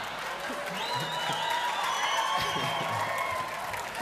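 Large audience in a hall applauding and laughing, the noise dying down near the end, with long held high whistle-like tones over it in the middle.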